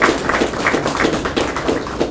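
Audience applauding: a short round of many hands clapping.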